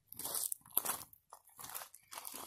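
Footsteps crunching on loose wood chips: a series of irregular crunches, about two a second.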